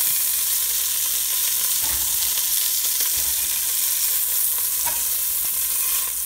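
Italian sausages sizzling in hot olive oil in a stainless steel pot, a steady hiss, with a few light taps and scrapes of a utensil against the pot as they are lifted out.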